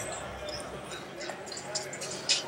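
Indistinct chatter of onlookers in a large indoor hall, with a few faint light taps.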